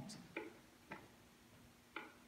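Near silence: quiet room tone with a few faint, unevenly spaced clicks.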